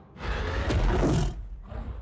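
A giant movie monster's roar, one loud call lasting about a second before fading away.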